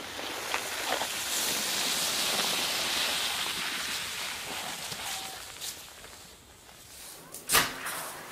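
A plastic sled sliding down a snow-covered road, a scraping hiss that swells as it comes close and fades as it goes past. A sharp knock near the end.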